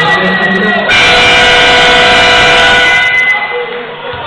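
Basketball arena horn from the scorer's table sounds about a second in, a loud, steady multi-tone blast held for about two and a half seconds.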